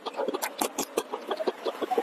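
Close-miked chewing of food: a dense, irregular run of small wet clicks and crunches from the mouth.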